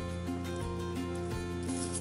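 Soft background music with sustained notes.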